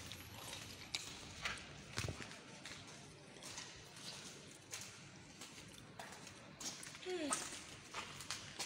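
Irregular footsteps and knocks over charred fire debris, faint, over a steady low hiss, with a brief voice sound near the end.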